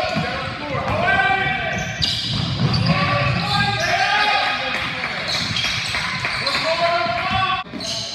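Live sound of a basketball game on a hardwood gym floor: the ball bouncing and players' and spectators' voices calling out, echoing in the hall. The sound changes abruptly about two seconds in and again near the end, where game clips are cut together.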